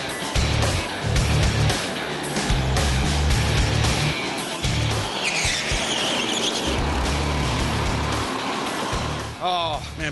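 Background music with a pulsing beat laid over the running of indoor rental go-karts driving past, with a brief tyre squeal about five seconds in. A man starts speaking near the end.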